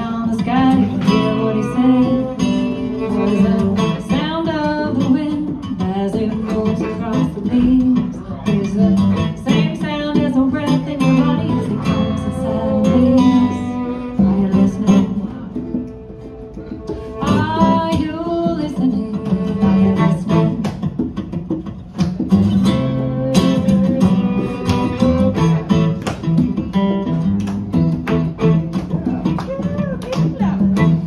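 Live acoustic folk band: a woman singing over strummed acoustic guitar, violin and hand drum. The music eases to a quieter passage about halfway through, then returns to full strength with the drum strokes coming through.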